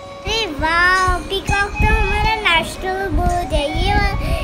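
A child singing a tune of held notes that step up and down.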